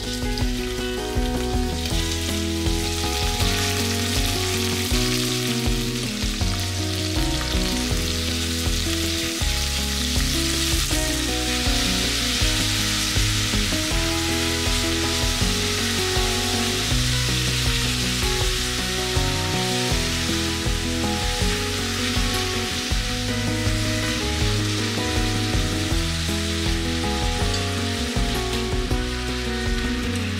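Sliced pork and green peppers sizzling as they stir-fry in a cast-iron pot, starting about a second in and holding steady, with background music underneath.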